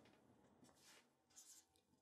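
Faint strokes of a felt-tip marker on paper as small face symbols are drawn: a few short, quiet strokes about half a second in and again around a second and a half in, otherwise near silence.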